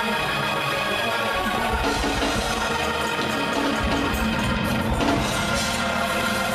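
Live gospel praise-break music from the church band: held chords over a drum beat.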